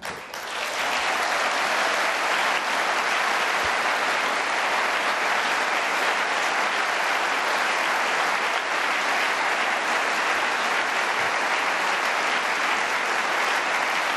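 A large hall audience applauding: sustained, steady clapping from hundreds of delegates, building within the first second and then holding at an even level.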